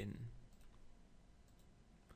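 A few faint computer mouse clicks, scattered, against a quiet background.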